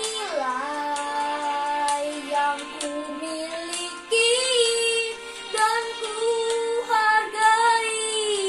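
A young boy singing a slow Indonesian worship song solo, holding long notes that bend and waver in pitch. A louder, higher phrase starts about four seconds in.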